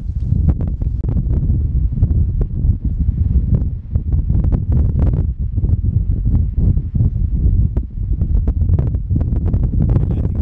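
Strong wind blowing across the microphone: a loud, gusting low rumble with scattered crackles.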